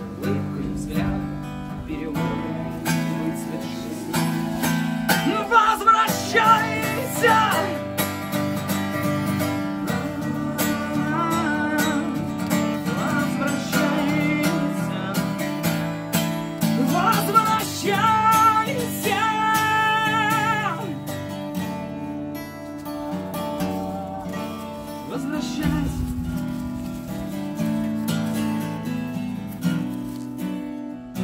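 Acoustic guitar strummed steadily as a song accompaniment, with a voice singing long, wavering notes over it at times, once about five seconds in and again past the middle.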